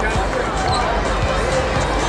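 Basketball-arena sound: crowd chatter and music, with the low thuds of basketballs bouncing on the court every half second or so.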